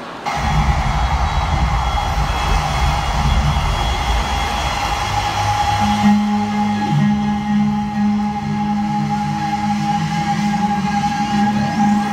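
Loud live concert music over an arena sound system, cutting in abruptly just after the start with heavy bass. About halfway through it changes to a held low note under a steady high tone.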